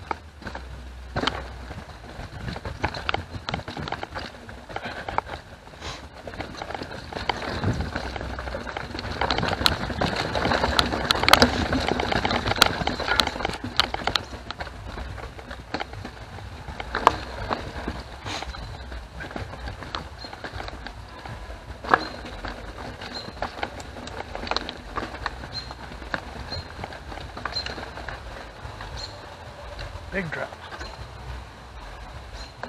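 Mountain bike rolling over a forest dirt trail: tyre noise on the ground with a stream of rattles and knocks from the bike over roots and rocks, loudest and busiest through the middle stretch.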